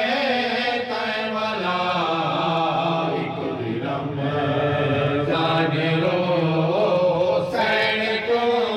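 Male voice chanting a noha, a Shia lament, in long melodic lines that hold and bend in pitch.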